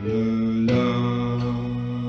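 A man's voice singing long, held notes in a slow, chant-like folk melody, moving to a new note about two-thirds of a second in.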